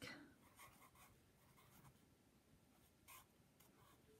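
Pencil writing on paper: a few faint, short scratching strokes over the first two seconds, and one more about three seconds in.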